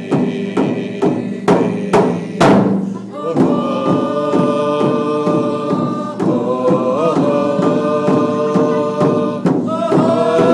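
A drum beaten with a padded stick in a steady beat of about three strikes a second, with one harder strike about two and a half seconds in. A group of voices sings a chant-like song over it, with long held notes from about three seconds in.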